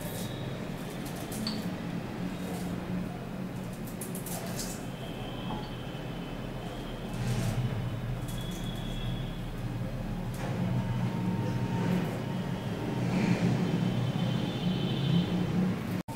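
Faint, scattered scrapes and clicks of a small kitchen knife peeling fresh ginger by hand, over a steady low hum of background noise that is the louder sound throughout.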